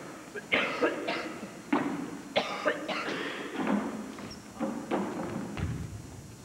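Basketballs bouncing on a hardwood gym floor, irregular thuds that echo around the gym, with voices in the background.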